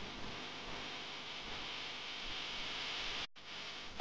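Steady hiss of background noise with no distinct events. It grows a little brighter toward the end and cuts out briefly just over three seconds in.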